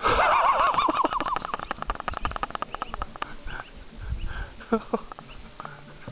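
A person's voice: a sudden loud, high-pitched wavering cry that breaks up into quick short pulses and dies away over the next few seconds.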